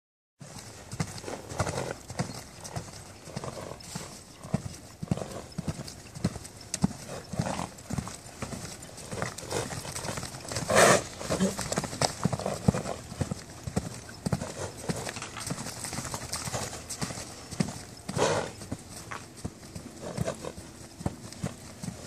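Hoofbeats of a horse cantering loose on a sand surface, an uneven run of soft strikes, with two louder brief noises about eleven and eighteen seconds in.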